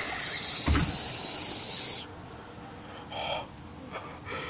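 A steady hiss, strongest in the high range, that cuts off suddenly about two seconds in, with a soft low thump just before one second in. This is the strange noise the plush characters are reacting to.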